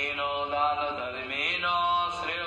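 A voice chanting in a melodic recitation, holding each note for about half a second.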